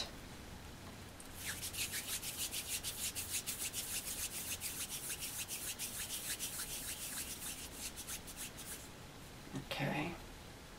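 Palms rolling a lump of polymer clay into beads: a rapid, even back-and-forth rubbing of skin, several strokes a second, that starts about a second in and stops shortly before the end.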